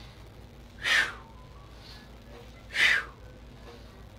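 A man's forceful breaths, twice, about two seconds apart, paced with a repeated kung fu swinging lunge exercise.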